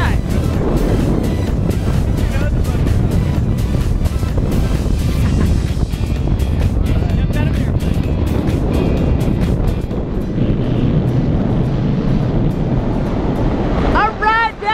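Wind rushing over the microphone under an open parachute canopy: a loud, uneven rumble with gusty buffeting that eases slightly near the end.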